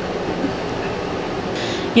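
A steady rushing noise with no clear pattern.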